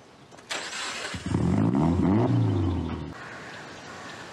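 A car engine starting, after a short noisy burst about half a second in, then revving up and down in pitch for about two seconds before it cuts off abruptly.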